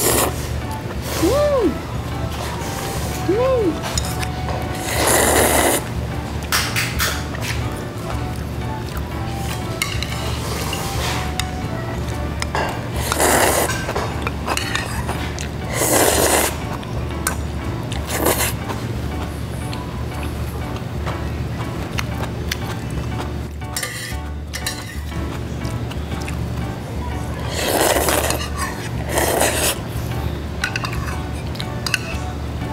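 Ramyun noodles slurped in short, loud bursts every few seconds, over background music with a steady low pulse.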